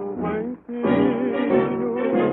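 A 1940 samba orchestra playing an instrumental passage between sung lines, from a 78 rpm shellac record, with the narrow, top-cut sound of an old recording. The band breaks off briefly just over half a second in, then comes back in.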